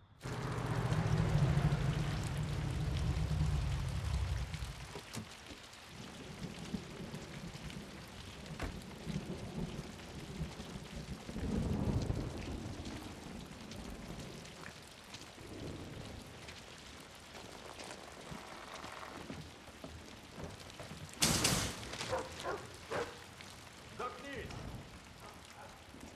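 Steady rain falling, with a deep rumble over the first four seconds or so. About 21 seconds in there is a sharp noise, followed by a few scattered knocks.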